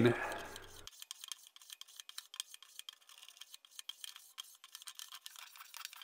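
Low-angle block plane taking thin shavings off a walnut strip: faint, short scraping strokes that come at an irregular pace, thin and hissy.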